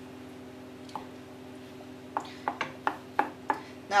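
Wooden spoon stirring thick peanut sauce in a stainless steel saucepan, with several short knocks of the spoon against the pan, mostly in the second half, over a steady low hum.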